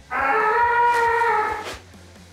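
A person's voice holding one long, high, steady note for about a second and a half, then stopping.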